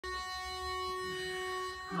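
A single steady reed tone held for nearly two seconds: a pitch pipe sounding the starting note. Right at the end the women's chorus comes in together on 'Oh'.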